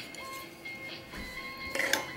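Soft background music with steady held notes, and a brief rustle near the end.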